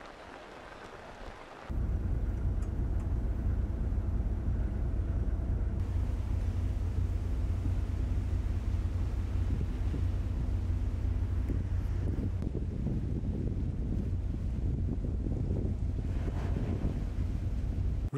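Rain falling for a moment, then a sudden cut to a loud, steady low rumble of a ship's engine with wind on the microphone as the vessel moves through sea ice.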